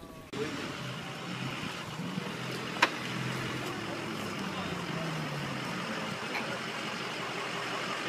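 A motor vehicle's engine running steadily under a constant rushing noise, its pitch drifting slowly, with one sharp click about three seconds in.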